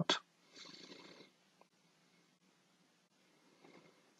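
Mostly near silence, with one faint breath drawn at the microphone about half a second in, lasting under a second.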